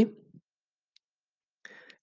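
A pause in a man's speech: the last word trails off, then near silence with one faint click about a second in and a short breath-like sound just before talking resumes.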